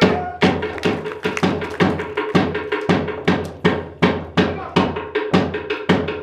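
Wooden sticks struck together in a steady rhythm by Māori performers playing tī rākau, the stick game: sharp clacks, about two or three a second.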